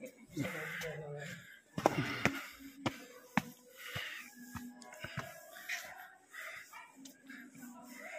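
Footsteps on stone steps, a run of sharp taps about two a second for a couple of seconds, with people's voices in the background.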